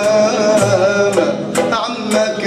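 Live Algerian traditional ensemble playing: a man's voice singing with wavering ornaments over upright-bowed violins, plucked lutes and a frame drum.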